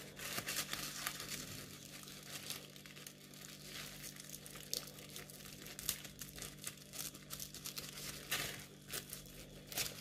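Tissue paper crinkling in quick, irregular crackles as hands work open a tissue-wrapped package sealed with a sticker, over a faint steady low hum.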